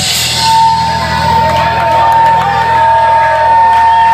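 Live surf rock band at the end of a song: the drums stop and a single loud, steady high electric-guitar tone rings on from about half a second in over amplifier hum, while the audience whoops and shouts.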